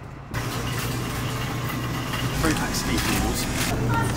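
Indistinct voices over a steady low hum, the background sound of a small grocery store.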